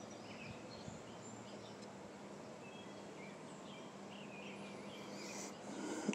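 Quiet outdoor background hiss with a faint steady hum, and distant birds chirping now and then.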